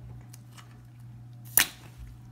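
A Tide laundry detergent pod bursting with a single sharp pop as it is squeezed by hand against a sink basin, about one and a half seconds in.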